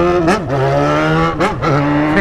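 Yamaha XJ6's 600 cc inline-four engine running under way at steady revs, with brief rises and dips in pitch about a third of a second in and again around a second and a half.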